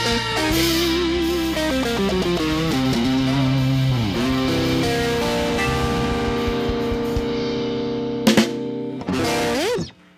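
Live band music led by electric guitar, playing a lead line with bends and vibrato over bass and drums, then settling into held notes. Drum hits close the song, and the music cuts off at the very end.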